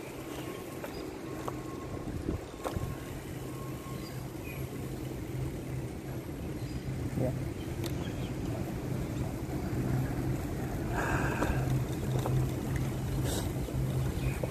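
Bike riding along a paved path: a steady low hum with wind rush on the microphone, growing slightly louder toward the end.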